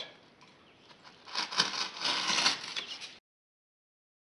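Utility knife cutting through hardened plaster cloth, a scratchy scraping that starts just over a second in and stops abruptly about two seconds later.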